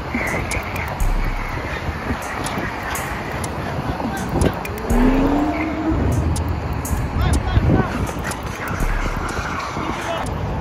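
Wind rumbling on the microphone of a camera moving along a city street, over the noise of passing car traffic. A brief rising tone sounds about five seconds in.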